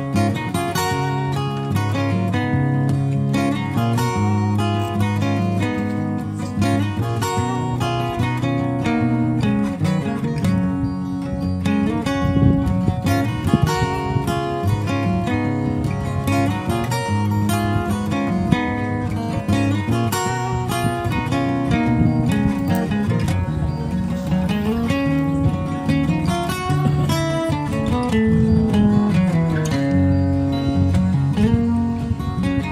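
Background music led by plucked and strummed guitar, playing a continuous melody.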